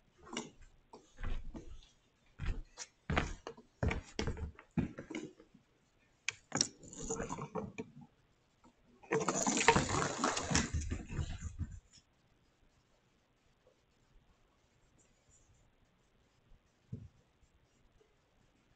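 Light knocks and clatters from kittens playing with a remote-controlled toy mouse on a hardwood floor. About nine seconds in comes the loudest part, roughly three seconds of rustling handling noise as the camera is moved. After that it is quiet.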